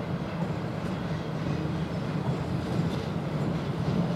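Freight train hauled by a DE1 electric locomotive approaching: a steady low rumble of the locomotive and tank cars rolling, growing slightly louder.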